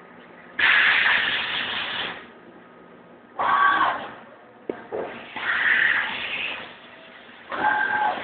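Deckel Maho DMP 60S CNC mill spraying inside its enclosure: four loud hissing bursts, each a second or so long, with a short sharp click in between and a faint steady machine hum underneath.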